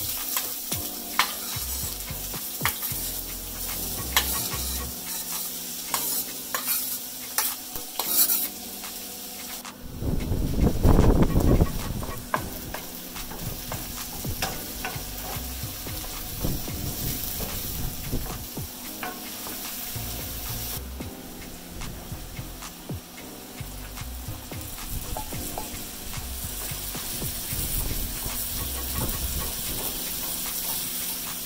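Food sizzling steadily in a hot pan while being stirred, with frequent clicks and scrapes of the utensil against the pan. About ten seconds in there is a louder, fuller rush lasting about two seconds.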